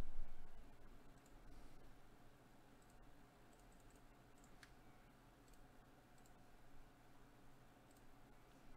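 Faint, scattered computer mouse clicks, a second or two apart, over a low steady electrical hum.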